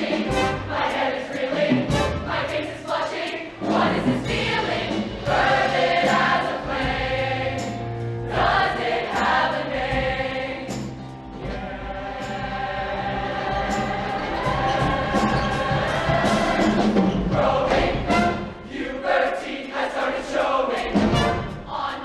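A mixed high school show choir singing in harmony over an accompaniment with a steady beat. The sound thins briefly about eleven seconds in, then the voices hold longer chords.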